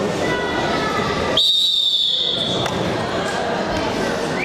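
Referee's whistle blown once, a loud steady high note about a second long, starting the wrestling bout over the chatter of a crowd in a sports hall.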